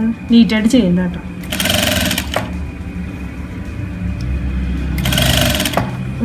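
Electric sewing machine running steadily from about a second in as it top-stitches a seam, a continuous low motor hum with the needle working. Two short, loud, buzzy bursts stand out over it, about a second and a half in and again near the end.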